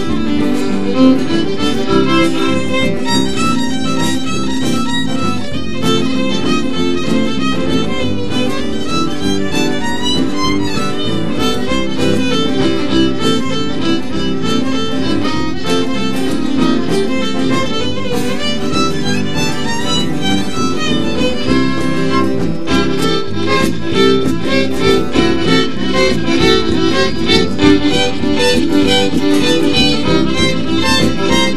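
Live acoustic string band playing an instrumental passage, the fiddle leading over strummed acoustic guitar and other plucked strings; it grows a little louder and busier toward the end.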